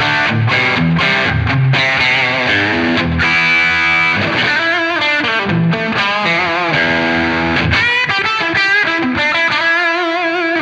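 Electric guitar through a West Co Blue Highway overdrive pedal on its third clipping stage, a heavily compressed, sustaining distorted tone. It plays chords at first, then a single-note lead line with vibrato, ending on a held note.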